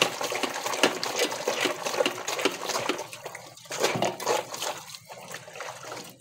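Water splashing and sloshing in a metal basin as clothes are washed by hand. It is busy for the first few seconds, then comes as separate splashes with short gaps.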